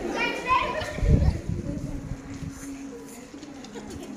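Girls' voices and chatter, with a heavy thump about a second in as a girl steps up onto a wooden school desk.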